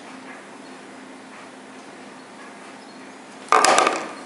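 Faint steady hum, then, about three and a half seconds in, a sudden loud half-second burst of rustling and knocking: handling noise from the camera being moved.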